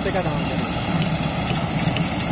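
New Holland 8070 combine harvester running steadily as it harvests rice, heard as a continuous low drone.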